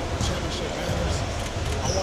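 A man speaking into reporters' microphones, with irregular low thuds underneath, typical of basketballs bouncing on a gym floor.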